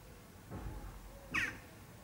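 A single short bird call about one and a half seconds in, over faint low outdoor background sound.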